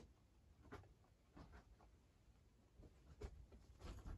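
Faint, irregular crunches and scratchy rustles of pet rabbits chewing dry pellets and shuffling about on a blanket, a handful of small sounds a second or so apart.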